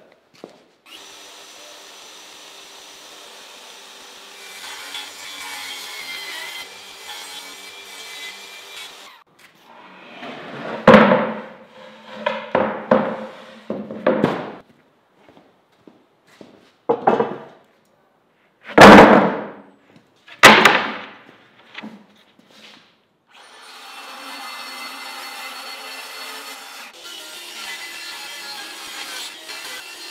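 Jobsite table saw ripping three-quarter-inch plywood, a steady running sound for most of the first nine seconds and again over the last six or so. In between come a string of loud, sharp wooden knocks and thunks as boards are handled.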